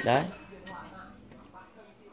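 Faint light metallic clinks as the metal trigger assembly of a homemade slingshot rifle is handled after being taken off its wooden stock.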